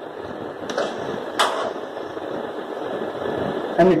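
Steady background room noise with two short, sharp clicks, about a second in and again about half a second later. A man's voice starts right at the end.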